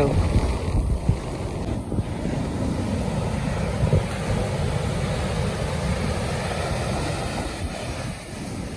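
Surf breaking and washing up a sandy beach, with wind buffeting the microphone as a steady low rumble.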